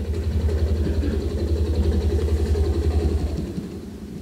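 Helicopter rotor beating in a rapid, steady low thudding that fades out about three and a half seconds in.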